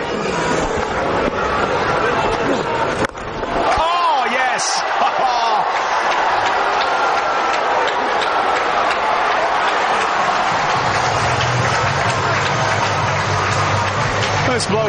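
Cricket stadium crowd shouting and cheering, with a sharp crack about three seconds in. A low, steady hum joins near the end.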